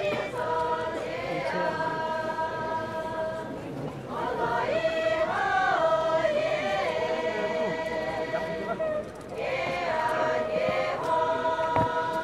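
Pochury Naga women singing a folk song together as an unaccompanied choir, in long held notes, with a new phrase starting about every four to five seconds.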